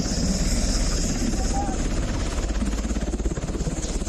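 Military helicopter running close by on the ground, its rotor giving a steady, rapid chop over loud rotor-wash and turbine noise.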